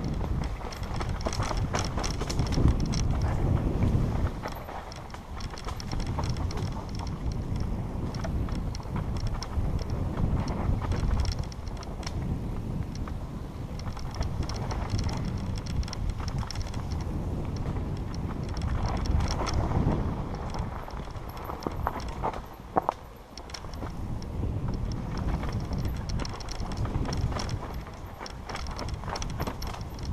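Mountain bike descending a bumpy dirt trail: wind buffeting the microphone with a low rumble, over a constant rattle and knocking of the bike and tyres across the rough ground.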